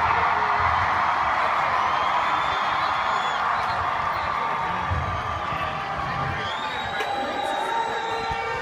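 Loud live metal concert heard at an amphitheatre: a dense wash of the band's music mixed with crowd noise and cheering, with low drum thuds now and then.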